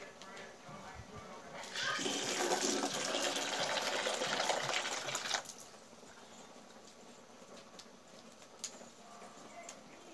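Water pouring or splashing for about three and a half seconds, starting near two seconds in and cutting off suddenly.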